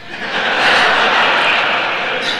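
A hall audience laughing together, swelling about half a second in and slowly dying away.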